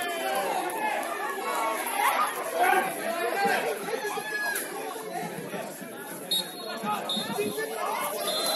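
Several voices of players and spectators talking at once across a football pitch. About six seconds in, a referee's whistle gives two short blasts: the full-time whistle.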